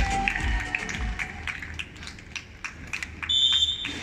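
Stadium PA music fading out, then scattered light clicks. About three seconds in comes a short, steady, high referee's whistle blast, the signal to serve.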